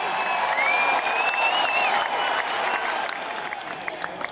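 Audience applause, a dense patter of many hands clapping, with a couple of high gliding whistles over it. It swells up quickly and then fades away.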